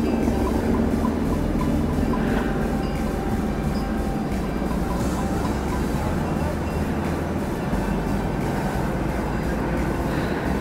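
A steady rushing noise with soft background music beneath it. The noise sets in abruptly at the start and holds an even level.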